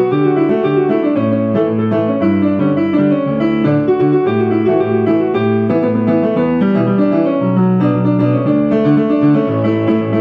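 Solo piano played with both hands: a pop song arranged for piano, with a steady bass line and chords in the left hand under the melody in the right, notes changing several times a second.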